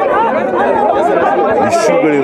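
Several men's voices talking over one another: crowd chatter in a press scrum.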